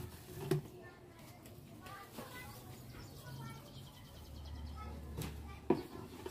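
Light knocks of plastic being handled as bottles are refilled with dishwashing liquid: a filled plastic bottle is set down on the table and a plastic funnel is fitted into an empty plastic bottle. There is one knock about half a second in and two near the end, the last the loudest, over faint background voices.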